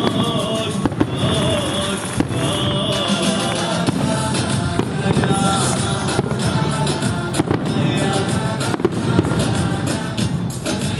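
Fireworks going off, sharp bangs every second or two, over loud music.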